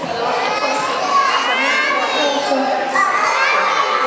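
A group of young children's voices shouting and chattering at once, many overlapping.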